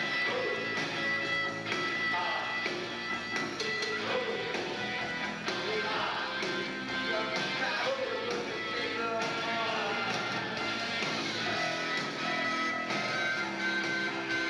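A rock band playing live, with electric guitars, bass and drums, and a singer at the mic.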